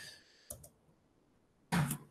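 Faint clicks of computer input, one about half a second in, then a short, louder burst of noise near the end.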